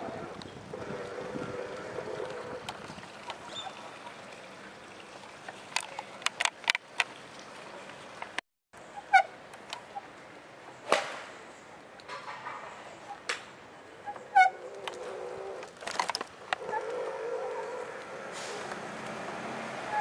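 Outdoor background noise with scattered sharp clicks and knocks and a few short series of chirping calls. The sound drops out for a moment near the middle.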